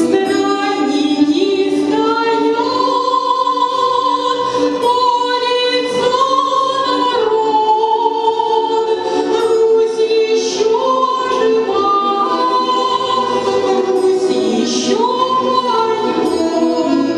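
A woman singing a slow melody into a microphone, holding long notes and gliding between them.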